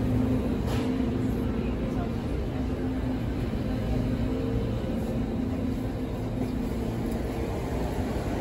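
Busy indoor store ambience: a low mechanical hum that fades in and out, with the background voices of people at the tables.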